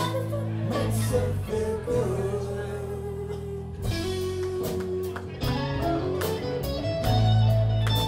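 A live rock band playing: guitars, bass and drums, with a sung vocal line. The drums come in with steady strikes about halfway through.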